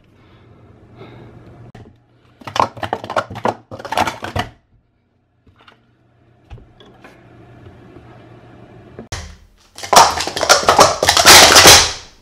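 Plastic Speed Stacks sport-stacking cups being rapidly stacked and unstacked on a stack mat: a rapid clatter of plastic clacks about two and a half seconds in, then a louder, denser flurry lasting about three seconds near the end. This is a timed stacking run of about two seconds.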